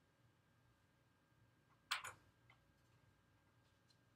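Near silence in a small room with a faint steady tone, broken by a sharp click or knock about halfway through, followed by a fainter tick.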